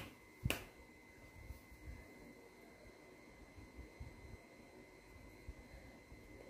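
Near silence: faint room tone, broken by a single sharp click about half a second in.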